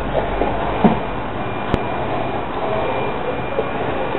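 Steady background noise with a single sharp click a little under two seconds in.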